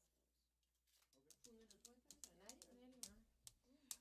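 Faint speech: after about a second of near silence, quiet talking begins and runs on.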